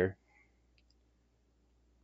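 The tail of a spoken word cuts off at the start, then near-quiet room tone with one faint, short click a little under a second in from trading cards being handled.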